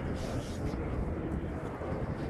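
Steady low rumble of outdoor city background noise, with faint voices.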